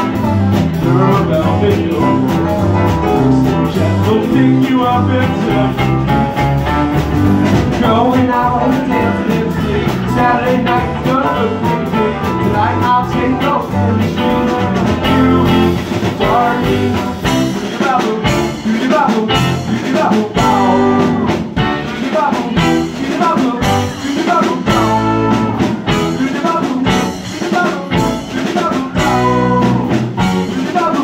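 A live band playing: electric guitar, bass guitar, drum kit, keyboard and pedal steel guitar. The low end thins out for stretches in the second half and comes back in full near the end.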